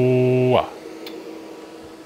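A man's drawn-out "hello" spoken into a radio microphone as a test transmission to drive the amplifier, held at one steady pitch and dropping off about half a second in. After it there is only a faint steady hum.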